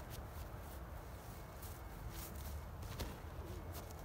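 Footsteps and scuffs on grass during a disc golfer's run-up and backhand throw: a few short soft thuds, the strongest about three seconds in, over a steady low rumble.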